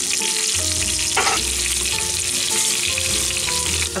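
Pork chops searing in hot oil in a skillet, a steady sizzle.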